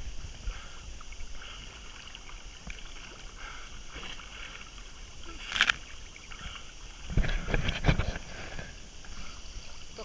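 Water lapping and splashing from one-armed swimming strokes, heard from a camera held at the water's surface. There is a sharp splash about halfway through and a run of louder splashes a little later.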